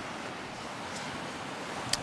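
Steady wash of surf breaking on a beach, mixed with wind on the microphone.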